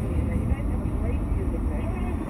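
Steady low rumble of a car's cabin while driving, with a faint voice underneath.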